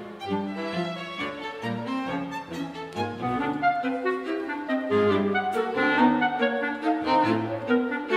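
Clarinet and string quintet (two violins, viola, cello and double bass) playing contemporary chamber music. The clarinet plays over the strings, with low bass notes changing every half second or so.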